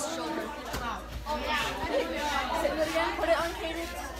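Chatter of several voices talking over one another, the words not clear.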